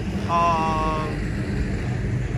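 A low, steady rumble of vehicle noise, with a man's drawn-out "uh" in the first second.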